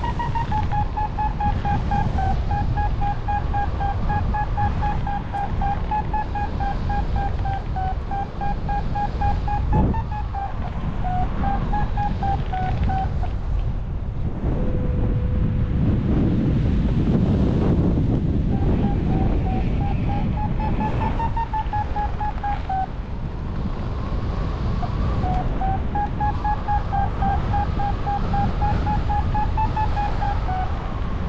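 Paragliding variometer beeping its climb tone: rapid beeps whose pitch wavers up and down, signalling that the glider is rising in lift. The beeping stops for a few seconds around the middle and again a little later. Wind rushes over the microphone.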